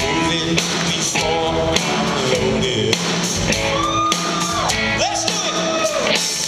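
Live rock band playing, with drum kit, guitars and shouted vocals. A few gliding notes come in about four and five seconds in.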